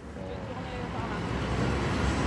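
Road traffic noise from a vehicle, growing steadily louder over the two seconds as it approaches.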